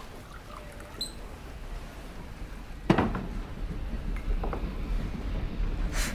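Glassware and small objects handled on a table: a short glassy ring about a second in, then a sharp knock, the loudest sound, about three seconds in. A low room rumble runs underneath.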